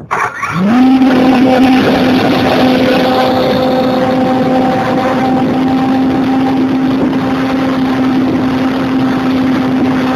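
Electric motor and propeller of an RC motor glider starting up about half a second in, rising quickly in pitch, then running at a steady whine under power, with wind rushing over the onboard camera's microphone.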